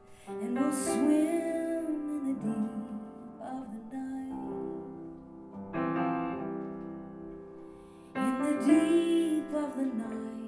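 A slow piano ballad with a woman singing, played live: one sung phrase in the first two seconds and another near the end, with held piano chords between them.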